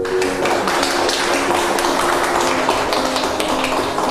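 A group clapping: dense, irregular applause that starts suddenly and dies away at the end, over soft background music.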